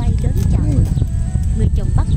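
Wind rumbling steadily on the microphone, with a voice and music mixed over it.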